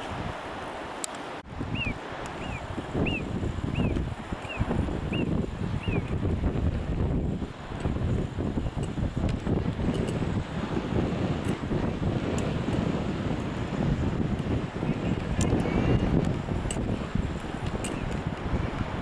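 Wind buffeting the microphone in uneven gusts, a low rumble throughout. Between about two and six seconds in, a run of about eight short, high chirping calls sounds at a steady pace.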